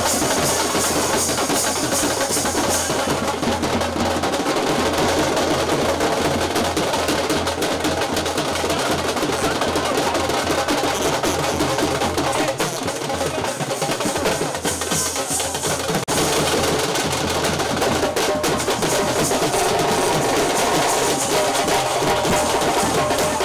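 Indian wedding brass band (band baaja) playing in a baraat procession, with drums and snare rolls carrying a continuous, loud, drum-heavy beat.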